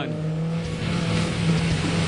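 Off-road rally car engine running hard at steady revs over a haze of tyre and gravel noise.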